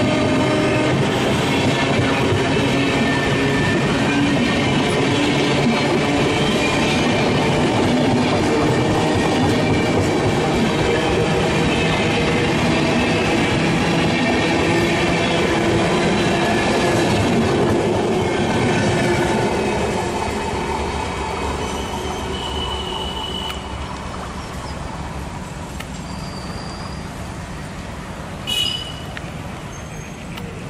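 Passenger coaches of an express train rolling past close by, their wheels running on the rails with faint high squealing whines. The sound holds loud for about twenty seconds, then fades as the last coach draws away. A brief high-pitched sound comes near the end.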